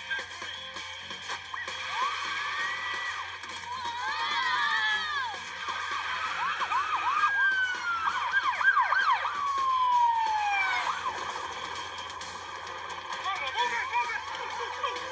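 Several police car sirens sounding over one another, their pitch sweeping rapidly up and down, with one long falling sweep about nine seconds in.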